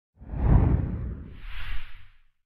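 Whoosh sound effect of a channel logo transition: a deep whoosh swells in about a quarter second in, then a second, higher and airier swoosh near the end.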